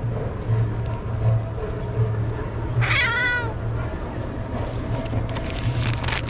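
A stray cat gives a single meow about halfway through, over a steady low hum.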